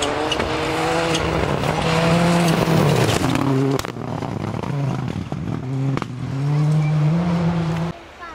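Ford Escort rally car's engine revving hard on a gravel stage, its pitch climbing and stepping down through gear changes as it approaches and passes, then climbing again near the end.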